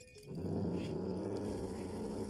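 Cartoon cat growling: a low, rough vocal sound that starts about a third of a second in and holds steady.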